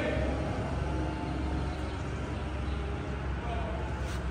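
A steady low rumble of background noise, with faint voices in the background.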